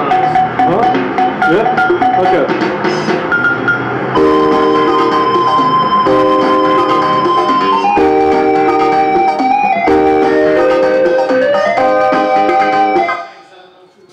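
Live electronic keyboard music: a few seconds of gliding, wavering tones, then held synthesizer-like chords changing about every two seconds, dying away just before the end.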